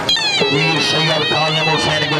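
Traditional Punjabi music for a horse dance: a dhol drum beating under a high, wavering pipe melody and a steady low drone, with a voice over it.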